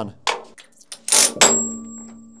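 Steel tooling clanking on a hydraulic press table: a small knock, then a sharp metallic hit about a second in that leaves a ringing tone slowly dying away.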